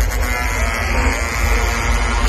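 Electronic dance music played loud over a festival sound system: a buzzing synth tone over a heavy bass.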